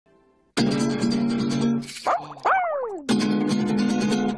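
Acoustic guitar strummed in quick, full chords, starting about half a second in. A break around two seconds in holds a short rising sound and then a longer sliding sound that falls in pitch, before the strumming picks up again.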